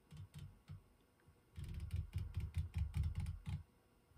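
Elevation turret of a Vortex Razor HD Gen II 4.5-27x riflescope turned by hand, clicking through its 0.1 mrad detents: a few separate clicks, then a fast, even run of about six clicks a second for two seconds.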